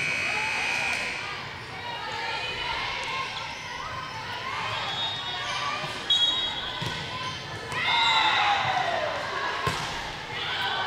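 Volleyball gym ambience between rallies: players' voices and calls, with one louder call falling in pitch about eight seconds in, and a few sharp thuds of a ball and footfalls on the court.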